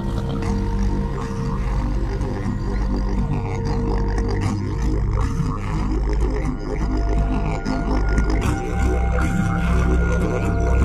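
Background film score: a deep, steady drone with long held tones above it.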